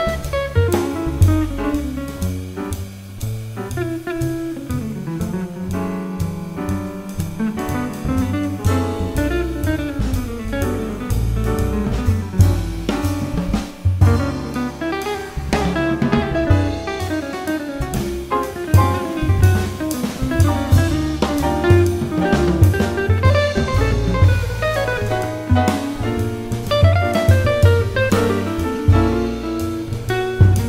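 Live small-group jazz: an archtop electric guitar soloing over double bass, drum kit and piano.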